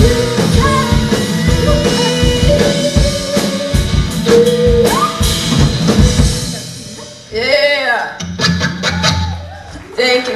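Live rock band of electric guitar, bass, drum kit and keyboard playing the close of a song with female vocals. The music stops about seven seconds in, followed by a brief voice calling out and a low note ringing on.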